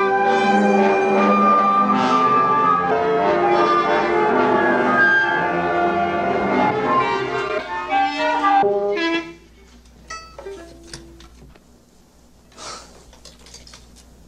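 A small orchestra playing a classical piece, many instruments sounding together, which stops abruptly about nine seconds in, leaving only faint scattered sounds.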